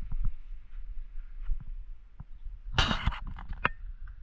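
Wind buffeting the microphone as a steady low rumble, with scattered faint ticks. About three seconds in comes a short, loud burst of scraping and crackling.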